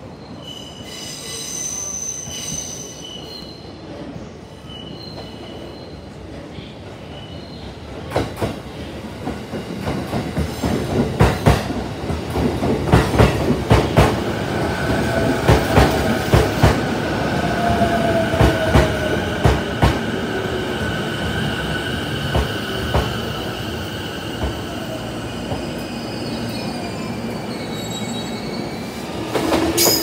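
Nambu Line commuter electric train pulling into the platform: wheels clattering over rail joints, getting louder from about eight seconds in, then a steady high brake squeal and a falling motor whine as it slows.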